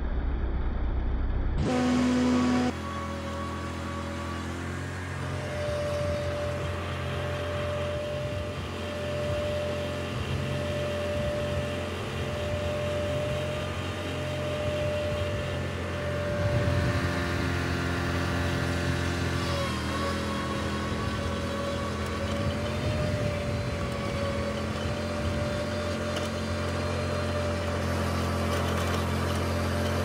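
Riding lawn mower engine running steadily while mowing grass, with a steady whine over the engine note.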